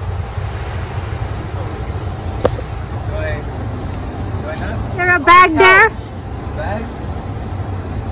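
Steady low rumble of an idling car. About five seconds in, a voice gives a short, loud, high-pitched call out.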